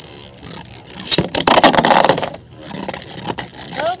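Two Beyblade Burst spinning tops running against each other on a plastic stadium floor: about a second in comes a sharp clash, then about a second of loud scraping as one top is knocked into the stadium's out pocket, followed by quieter spinning and a few ticks.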